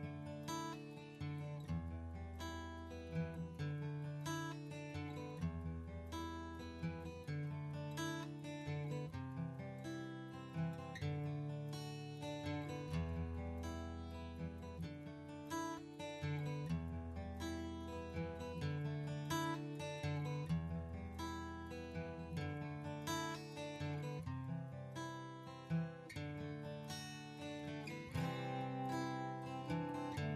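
Instrumental background music, an acoustic guitar playing plucked and strummed chords that change every second or two.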